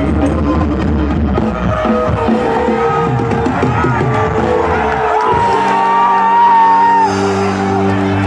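Dangdut band music over loudspeakers, mixed with the noise and shouts of a large, agitated crowd. A wavering melody line rises above held chords in the second half.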